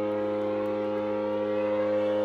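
Small orchestra of strings and winds holding a dense, sustained chord while some lines slide slowly upward in pitch, giving a siren-like glissando.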